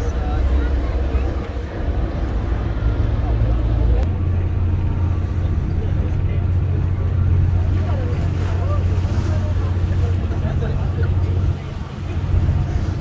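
Tour ferry's engine running with a steady low drone, heard from on board along with wind and water noise; the drone changes and deepens about four seconds in. Faint voices sound in the background.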